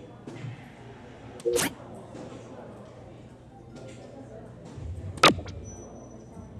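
Two sharp hits about four seconds apart, the second the louder, typical of soft-tip darts striking an electronic dartboard. A thin high electronic tone starts near the end. Crowd chatter runs underneath.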